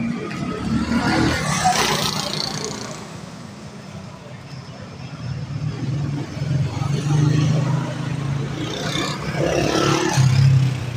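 Street traffic noise: vehicle engines running, with people's voices. A vehicle passes loudly a second or two in, and a steady engine hum runs through the second half.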